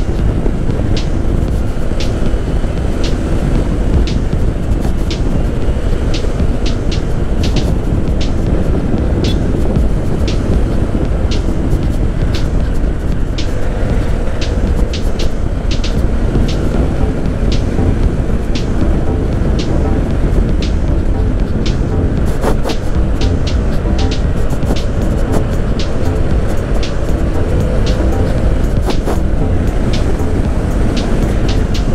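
Wind rushing over the microphone on a moving scooter, over the steady running of the Honda ADV 150's 150 cc single-cylinder engine at cruising speed. Short sharp ticks come through frequently and irregularly.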